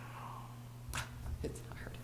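Quiet, breathy speech: a single word ("think") spoken softly just after a sigh, with a short click about a second in. A steady low electrical hum runs underneath.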